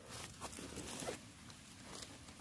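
A person moving about: a few soft rustling and scuffing noises in the first second, then quieter.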